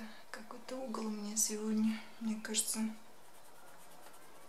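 A woman speaking softly for about three seconds, with faint scratching of a coloured pencil on paper.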